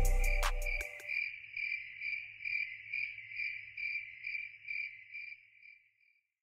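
The song's hip-hop beat cuts off about a second in, leaving a cricket chirping steadily at about two chirps a second over a faint low hum, fading out near the end.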